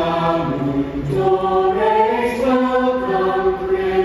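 A chorus of many voices singing together in slow, long held notes that step from one pitch to the next: a merry Christmas song.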